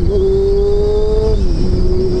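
Honda CBR600 F4i's inline-four engine running at road speed, its steady note climbing slightly and then dipping about a second and a half in. Wind rushes over the microphone throughout.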